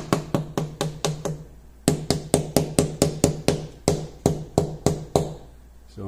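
Rapid, even tapping on the underside of a transmission oil pan, about five knocks a second with a low ring from the pan. There is a short pause about a second and a half in, then a longer run that stops a little after five seconds. Each run of taps makes the TCC solenoid circuit's resistance reading jump, which points to an intermittent open that the mechanic suspects is a loose terminal or crimp inside the transmission.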